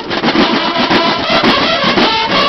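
Banda de guerra playing loudly: marching snare and bass drums beating in fast strokes under bugles.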